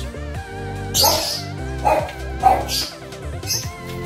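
A dog barking three or four times in short bursts over melodic background music.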